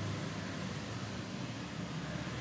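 Steady low-level background noise: an even hiss with a low hum underneath and no distinct events.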